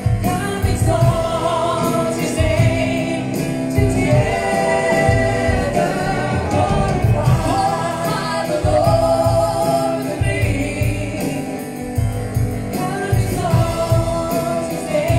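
A gospel worship song, sung by voices over electronic keyboard accompaniment.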